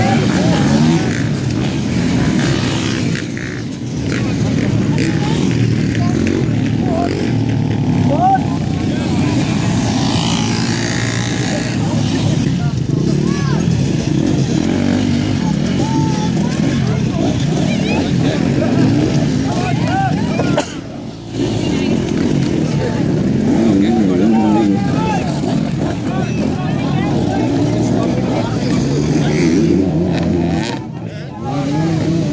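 Several dirt-bike engines running and revving, rising and falling in pitch, with people's voices mixed in.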